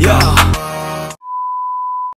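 Rap-style background music cuts off about half a second in. A little past the middle comes a single steady high-pitched test-tone beep, the tone that goes with TV colour bars.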